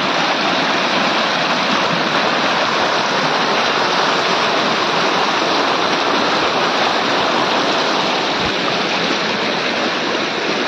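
Rain-swollen muddy floodwater rushing and churning in white-water turbulence over flooded ground, a steady, loud sound of running water.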